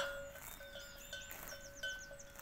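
Faint small-bird chirps and twitters in the background, over two thin steady tones that break off and return every half second or so.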